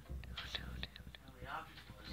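A person whispering quietly, with a few faint clicks.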